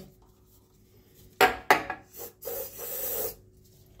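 Two short sharp sounds about a second and a half in, then an aerosol can of WD-40-type spray hissing for about a second.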